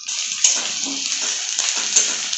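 Sliced onions frying in hot oil in a steel kadai, sizzling with a steady hiss that starts suddenly.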